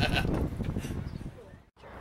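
A man laughing heartily, the laugh trailing off over the first second and a half; the sound then drops out abruptly for a moment near the end.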